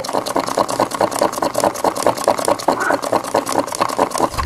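Wooden stick stirring fibreglass resin and hardener in a plastic cup, scraping and knocking against the cup's sides in a fast, even rhythm of about seven strokes a second.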